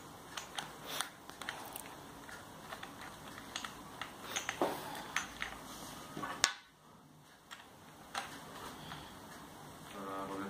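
Scattered light metallic clicks and taps of a hex key working the saddle clamp bolts on a bicycle seatpost, with one sharper click past the middle.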